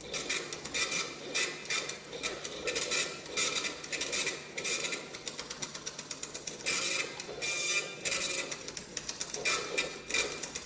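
Rapid, irregular clicking and rattling, with louder bursts of hiss about once a second.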